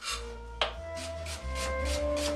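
Chef's knife slicing a red onion thinly on a plastic cutting board: one sharp knock about half a second in, then a quick, even run of cuts, about six a second. Soft background music plays underneath.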